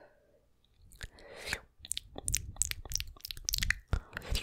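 Close-miked wet mouth sounds on a Blue Yeti microphone: rapid tongue clicks, smacks and licks right at the grille. They start about a second in, after a near-quiet pause.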